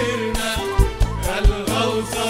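Live Arabic devotional song (inshad): male vocals sing a winding melodic line over an instrumental ensemble, with low drum beats about every half second.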